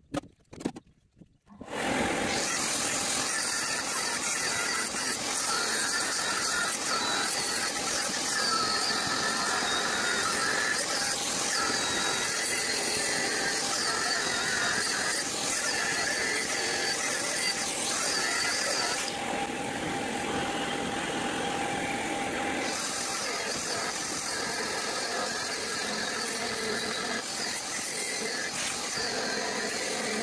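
Angle grinder grinding a raised weld bead off a steel plate. It starts about two seconds in, with a shower of sparks, and keeps going steadily. There is a lighter spell of a few seconds about two-thirds of the way through.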